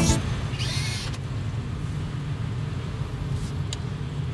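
Steady low rumble of a car driving, heard from inside the cabin. A short click comes near the end as a hand works the dashboard controls.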